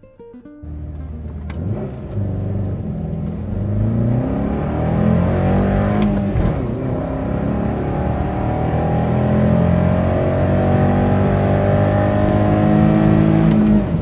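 Subaru Forester's FB25 2.5 L flat-four engine accelerating, heard from inside the cabin and running naturally aspirated with the supercharger out of the intake path. The engine note climbs, breaks about six seconds in, then climbs again more slowly.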